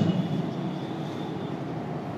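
Marker pen writing on a whiteboard, with a faint thin squeak for about a second, over a steady low background hum.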